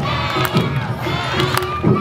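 Children's voices shouting Awa Odori dance calls over the festival accompaniment, which has a held high flute note and sharp percussion strikes every few tenths of a second.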